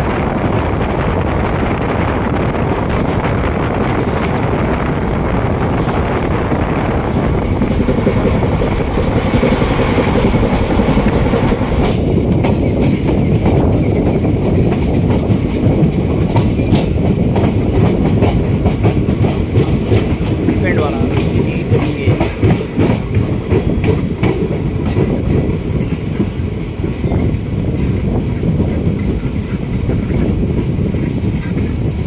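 Indian passenger train coaches running, heard from an open coach door: a steady rush of wind and rail rumble. About twelve seconds in the wind drops, and the wheels click repeatedly over rail joints and points as the train pulls into a station.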